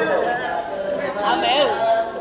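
Boys' nasyid group singing a cappella, a lead voice on a microphone with the group's voices behind, over background chatter.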